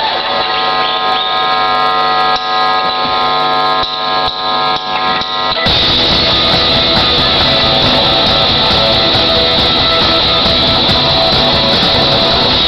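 Live rock band starting a song: electric guitar holding ringing notes and chords, then about five and a half seconds in the full band comes in together, louder and denser, with drums and guitars.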